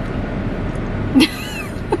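Steady low hum of a car and the street around it, with a short high-pitched squeal a little past a second in.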